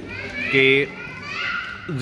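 Children's high voices calling and chattering in the background, with one loud, high call about half a second in.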